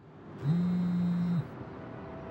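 A wristband's vibration motor buzzing once for about a second: a low, steady buzz that slides up briefly as it starts and cuts off suddenly, over a faint hiss.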